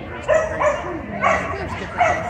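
A dog barking twice, about a second apart, short high barks over a background of people's voices in a large hall.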